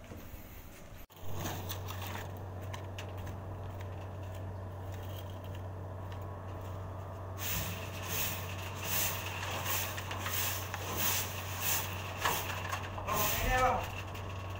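Broom sweeping the steel floor of an empty truck cargo bed: short scraping strokes about two a second, starting about halfway through, over a steady low hum.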